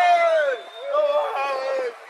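Speech only: a drawn-out vocal exclamation that falls in pitch just after the start, then a second long, held vocal sound.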